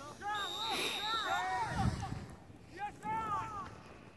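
Distant, unintelligible shouts of players on the field: two stretches of calling, the second starting a little before three seconds in.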